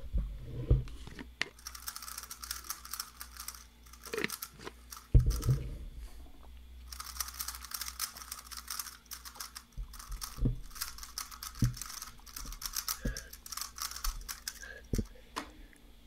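Rapid runs of clicking from a speedcube being turned by hand, in two long spells. A few low thumps come in between, the loudest about five seconds in.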